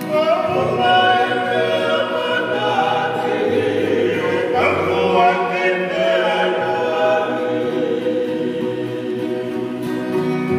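A group of men singing a Tongan hiva kakala song in several-part harmony, with acoustic guitars playing along.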